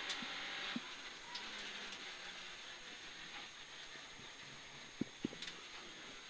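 Peugeot 106 GTi rally car heard from inside the cabin, its four-cylinder engine and road noise running at a steady moderate level. Two short sharp knocks come about five seconds in.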